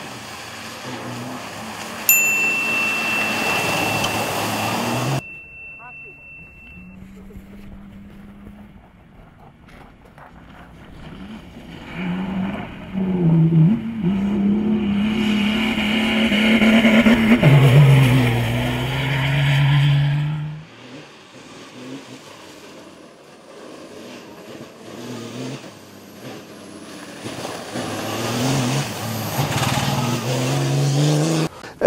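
Turbodiesel rally-raid off-road racer driving hard on dirt and gravel, its engine pitch rising and falling with the throttle and gear changes, in several short takes that cut off abruptly. A steady high whistle sounds for a few seconds near the start.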